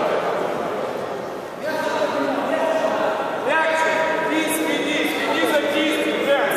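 Indistinct men's voices talking in the background.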